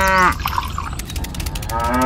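A cow mooing twice: one moo ends just after the start and another begins near the end.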